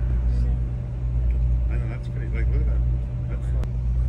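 A boat's engine running with a low, steady drone, and faint voices of people talking about midway.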